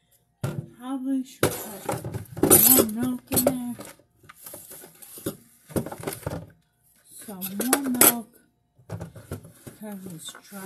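Dishes and utensils clinking and clattering at a kitchen sink in a run of sharp knocks, loudest about two and a half seconds in and again near eight seconds. A woman's voice mutters between them.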